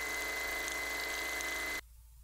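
Sewing machine running at a steady speed during free-motion stitching: a constant motor hum with a thin, steady high whine. It cuts off suddenly near the end.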